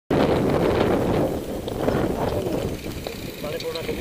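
Wind buffeting a helmet-mounted camera's microphone, mixed with mountain-bike tyres rumbling over a gravel trail. The noise is loudest at the start and eases off, and faint voices come in near the end.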